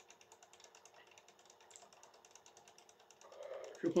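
Faint, rapid, evenly spaced ticking over a low steady hum, with a man's voice coming in at the very end.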